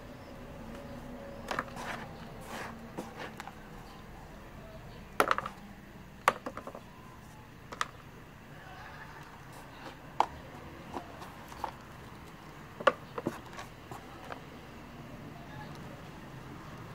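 Gloved hands working potting soil in a plastic basin and trough: irregular clicks, knocks and scrapes of soil, grit and tool against plastic, the loudest about five seconds in and again near the end, over a steady low hum.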